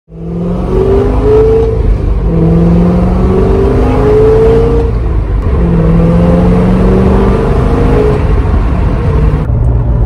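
C6 Corvette's V8 engine pulling under load, heard from inside the cabin over road and wind noise. Its pitch holds or climbs in stretches, breaking briefly about two and five seconds in. Near the end the rushing noise drops away, leaving a low hum.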